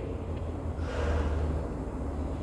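A breath near the microphone lasting about a second, over a low steady hum.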